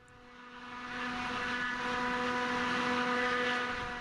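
Steady engine drone: a pitched hum with a rushing noise over it, fading in over the first second or so and then holding level.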